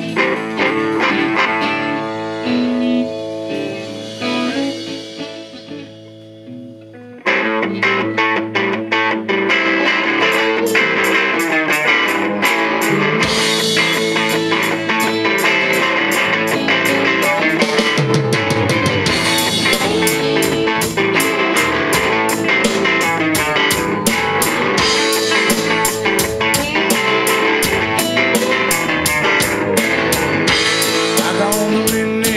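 Live rock band playing an original song: electric guitar notes ring and fade for the first seven seconds, then the full band comes in with electric guitars, bass and drum kit and plays on steadily, without vocals.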